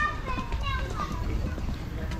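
Background voices of children and people around, with several higher-pitched voices calling and chattering.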